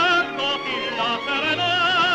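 Operatic tenor singing with a wide vibrato, with orchestral accompaniment. A long held note ends just after the start, a few quicker notes follow, and another note is held near the end.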